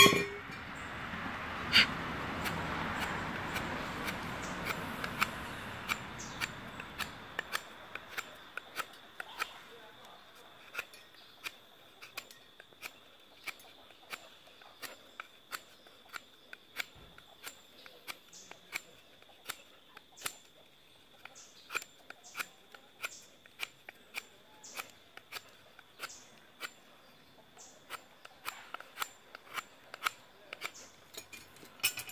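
Knife blade whittling a wooden speargun stock: short sharp snicks of the blade biting into the wood, irregular, a few a second. A broad rushing noise fills the first several seconds and fades out.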